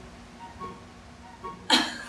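A person's sudden short, breathy burst of laughter near the end, after a stretch of faint, soft voice.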